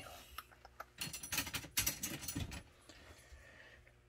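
Small hard parts clicking and rattling as a hand picks up a foam blocking piece from the workbench, in two short bursts about one second and two seconds in.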